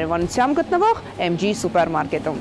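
Speech only: a woman's voice talking continuously, with no other sound standing out.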